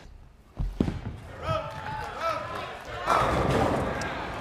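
A bowling ball released onto a wooden lane, landing with a heavy thud about half a second in and rolling down the lane. About three seconds in, a louder clatter as it reaches the pins, with voices underneath.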